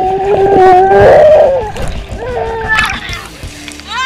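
Pool water splashing and bubbling around an underwater camera as a child swims past, with a steady held tone that ends about a second and a half in. A child's cry starts just at the end as she surfaces.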